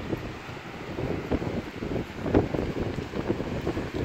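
Strong wind buffeting the microphone in uneven gusts, with surf breaking on a rocky shore underneath.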